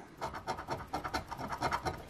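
A coin scraping the scratch-off coating on a lottery ticket in quick, rapid strokes, starting about a quarter second in.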